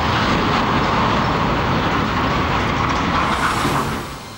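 Steel container crane collapsing after demolition blasts: a long, loud crashing rumble of heavy steel coming down, fading away near the end.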